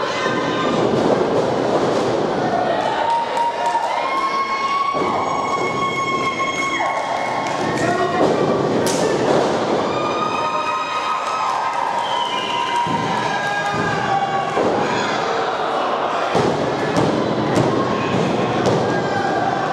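Wrestlers' bodies hitting the canvas-covered boards of a wrestling ring, with scattered thuds, under voices calling out, some drawn-out shouts held for a second or two.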